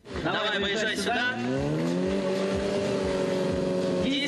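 Stunt motorcycle's engine revving up, its pitch climbing over about a second and then held steady at high revs while the bike is ridden on its back wheel in a wheelie.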